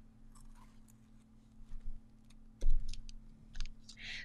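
Light handling noise and scattered small clicks as a sublimation-printed jigsaw puzzle board is picked up and turned over on a desk, with one loud thump about two and a half seconds in, over a faint steady hum.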